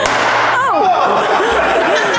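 A sudden bang right at the start, followed by excited wordless shouts and shrieks whose pitch swoops up and down.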